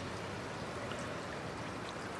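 Steady, even rushing background noise with no distinct events and nothing that starts or stops.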